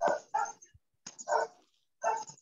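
A dog barking over a video call's audio, three short barks in about a second and a half.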